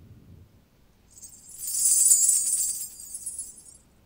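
A shaken jingling percussion instrument: a bright metallic shimmer that swells in about a second in, is loudest in the middle and fades away shortly before the end.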